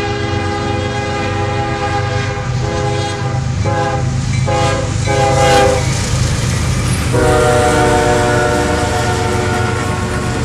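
Freight train's GE diesel locomotives passing close by with the lead unit's multi-note air horn blowing for a crossing: one long blast, a few short blasts, a brief pause, then a long blast that holds on, all over the steady rumble of the diesel engines.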